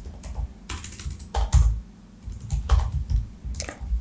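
Typing on a computer keyboard: irregular keystrokes, some in quick runs of several presses.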